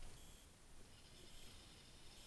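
Near silence: only faint background noise.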